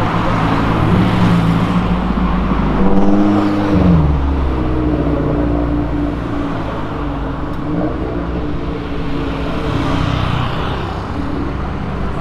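Car engines passing on a city street: one engine note holds steady, then drops sharply in pitch about four seconds in, with a lower engine hum and road noise running on after it.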